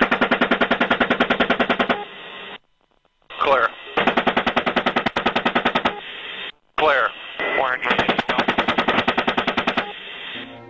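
AH-64 Apache's 30 mm chain gun firing three bursts of about two seconds each, at roughly ten rounds a second. Short snatches of crew radio talk come between the bursts.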